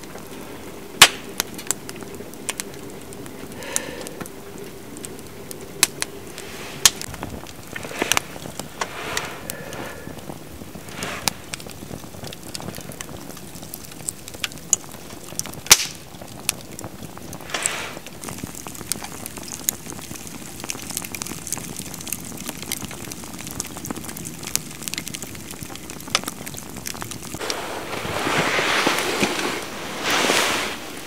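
Wood fire crackling in a mesh-sided fire grate, with sharp irregular pops throughout. Near the end, a louder rustling swell rises close by.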